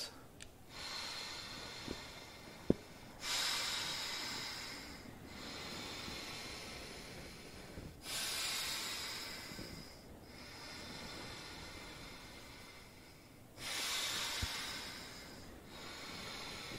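Slow, deep breaths drawn in and blown out through a Delta V handheld resistance breathing trainer set at level 5, making an airy hiss. The breaths come in alternating louder and softer stretches of two to three seconds each, with one sharp click early on.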